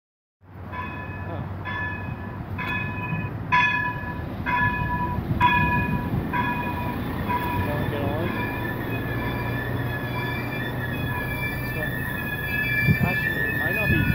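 An O-Train diesel railcar pulling into a station over a steady low rumble. A bell rings about once a second for the first several seconds. Then a long, steady high squeal holds on as the train slows to a stop.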